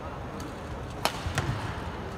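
Badminton singles rally: a sharp racket-on-shuttlecock hit about a second in, followed closely by a second, heavier knock, over a low murmur of the arena crowd.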